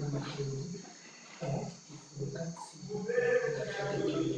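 Indistinct voices talking in a room, too unclear to make out as words, with a longer drawn-out voiced sound near the end.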